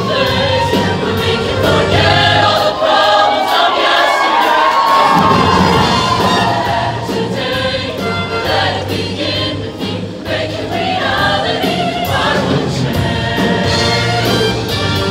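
Show choir singing in full ensemble over a live band accompaniment; the bass drops away for about two seconds a few seconds in, then returns.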